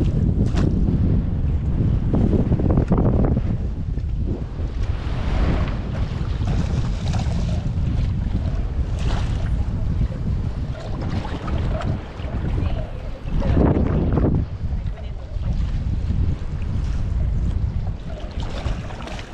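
Wind buffeting the microphone, with water sloshing and splashing around a landing net held in shallow bay water, and a few short splashes along the way.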